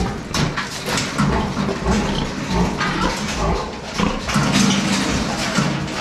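Sow grunting repeatedly in a metal farrowing crate, in several bursts with the longest run of grunts near the end, along with a few sharp knocks.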